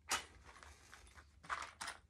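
A wooden match scraped against the side of a cardboard matchbox: a sharp scratch at the start, then two short scrapes near the end as it is struck and lights.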